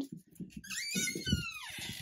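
A dog whining: one drawn-out whine about a second long that rises and then slides down in pitch, with soft low thuds underneath.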